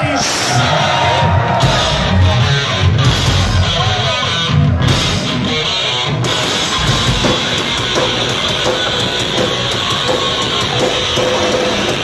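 A punk rock band playing live and loud: distorted electric guitars, bass and a drum kit, heard from within the crowd.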